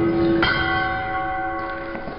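Glass goblets hitting the floor and breaking, with several clear tones ringing on after the impact. A second strike about half a second in sets off fresh ringing that slowly fades.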